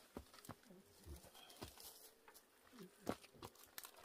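Near silence broken by faint scattered clicks and rustling of dishes, utensils and food wrappings being handled.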